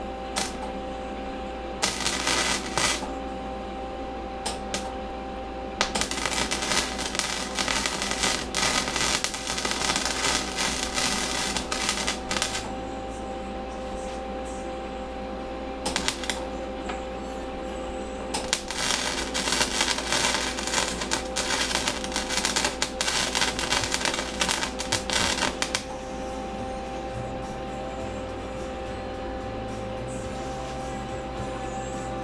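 Lincoln Weld-Pak 3200HD wire-feed welder arc crackling in bursts while tacking and running welds on steel: short tacks about two and five seconds in, then two longer welds of about six and seven seconds with a brief tack between them. A steady hum sits under it throughout.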